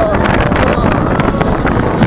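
Wind buffeting the microphone while a roller coaster train runs along the track at speed, a loud, steady rush with a rumble and scattered rattles from the train.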